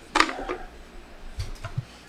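Wooden box-jointed pieces being handled: one sharp knock about a quarter second in, then a few softer knocks.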